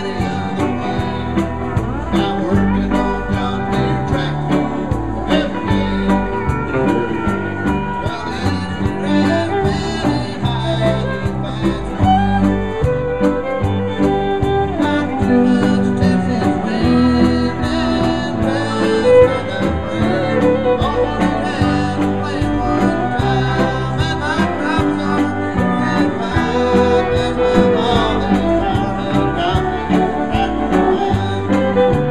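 Live country band playing a song, with fiddle, mandolin, guitar and steel guitar, and a man singing lead.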